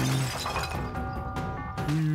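Cartoon sound effect of a wall smashing and shattering at the start, with smaller crumbling crackles after it, over background music.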